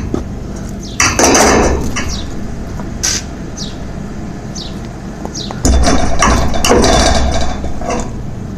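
Metal scoop scraping and clattering through a pile of coal, in two noisy spells about a second in and again near the end, over the steady low hum of the forge's air blower.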